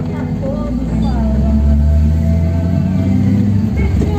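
A car driving slowly with its engine running steadily, under a voice and music.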